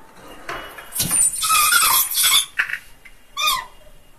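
Tall pull-out display panel being slid out of its rack. It makes a loud scraping rush for about a second and a half, with squealing from its runners, then one short squeak near the end.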